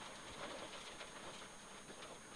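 Faint, steady cabin noise of a Mitsubishi Lancer Evo 9 rally car running on a gravel stage, an even hiss with no clear engine note.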